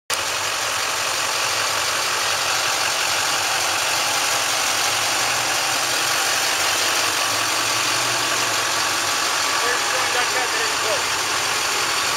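A vehicle engine idling steadily, with faint voices near the end.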